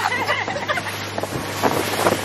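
Wind buffeting the microphone over a steady low hum, with brief laughter at the start.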